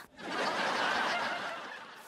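Canned audience laughter that swells and then fades away over about two seconds.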